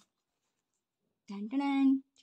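Silence, then about a second and a quarter in a woman's voice speaks briefly, ending on a held, drawn-out syllable.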